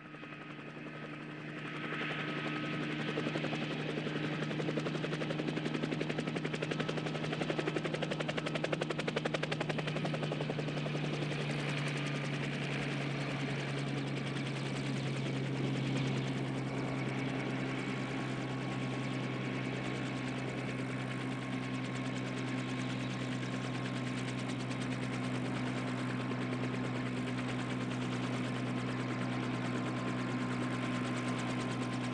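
DJI Mavic Pro quadcopter's motors and propellers buzzing steadily as it comes in to land: a low hum with a thin higher whine, growing louder over the first two seconds and then holding.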